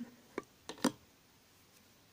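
Metal knitting needles clicking against each other as stitches are worked: three light clicks in the first second, then faint room tone.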